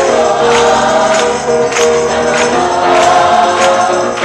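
A gospel-style pop song with several voices singing long held notes together over a band, and a bright percussion hit, like a tambourine, falling regularly about every two-thirds of a second.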